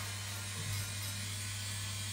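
Electric nail drill running at a steady speed while a toenail is filed level, a steady low hum.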